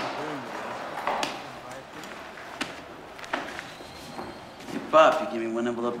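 A few sharp knocks and clicks over a low background murmur, with brief voice fragments; a man starts speaking near the end.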